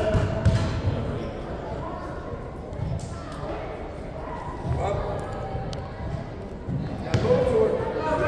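A basketball bouncing a few times on a wooden gym floor, dull irregular thuds echoing in a large hall, with distant voices of players and spectators.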